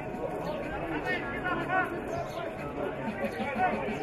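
Indistinct chatter of several people's voices overlapping, with a few louder calls standing out about one to two seconds in; no single speaker is clear.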